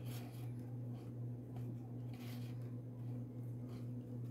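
Faint swishes of macramé cord being drawn through a knot and rubbed between the fingers, three short brushes, over a steady low hum.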